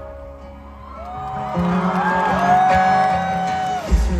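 A quiet break in a live acoustic guitar song, with rising and falling whoops from the crowd and a long held voice note in the second half. The song's full low end comes back in at the very end.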